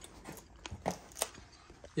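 Faint handling noise: a few light clicks and rustles as a hand and camera move over a harness's nylon webbing and hardware, the two sharpest clicks about a second in.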